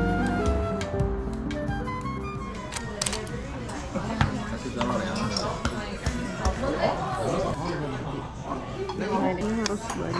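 Background music fading out in the first couple of seconds, giving way to restaurant ambience: voices talking and the clink of dishes and cutlery, with a few sharp clinks about three to four seconds in.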